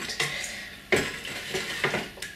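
A hand stirring liquid Limoges porcelain casting slip in a bucket, feeling for lumps: wet swishing with a sharp knock about a second in.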